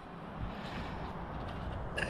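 Faint, steady outdoor background noise; the mower's petrol engine is not yet running.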